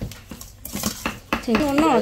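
A metal spoon scraping and clinking against a stainless steel bowl as minced meat for laab is stirred and mixed, in a string of quick, irregular strokes.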